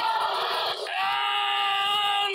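A woman's long, steady-pitched scream of triumph after winning a fight, starting about a second in and held without a break.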